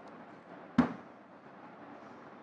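A single sharp thud about a second in, from a heavy book being handled on a wooden lectern, against faint room hiss.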